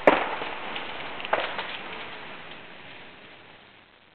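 Ice-laden tree branches cracking during an ice storm: a loud crack and crash at the start and another sharp crack about a second and a half in, over a steady patter of freezing rain. The sound fades away toward the end.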